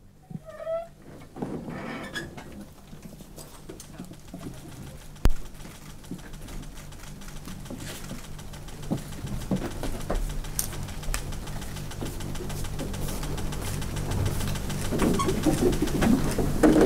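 Quiet room with a steady low hum and scattered small clicks, one sharp click about five seconds in; shuffling and murmuring build near the end.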